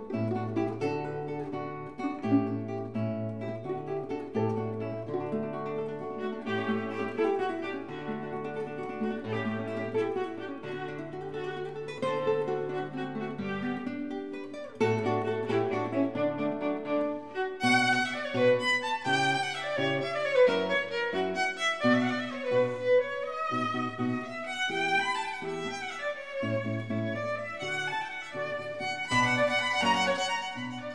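Violin and classical guitar duo playing an Allegretto rondo in D major. The guitar keeps up repeated bass figures and chords. About two-thirds of the way through, the violin comes to the fore with quick runs that rise and fall high above it.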